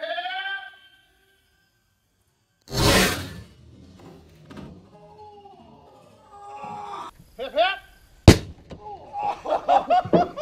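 Car airbag firing under a loose car hood: a sharp, very loud bang about eight seconds in. About three seconds in there is a longer noisy burst, with voices and laughter between.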